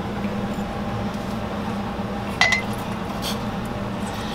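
A glass pint jar clinks once, a sharp knock with a short ringing tone, as a hand-held lemon squeezer is brought against it to juice a lemon; a fainter tick follows. A steady low hum sits underneath.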